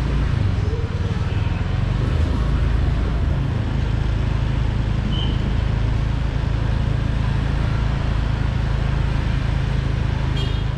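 Road traffic: cars running past in the street, a steady low rumble with dense noise above it.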